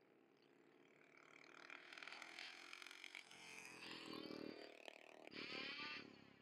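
Faint motor of a race bike out on the track, growing louder from about a second in and loudest near the end, its pitch rising and falling.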